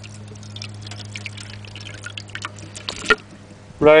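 Juice and pulp of hand-crushed Chardonnay grapes poured from a plastic container into a fine metal mesh strainer, with irregular splashing and dripping. A steady low hum lies underneath, and there is one sharper click about three seconds in.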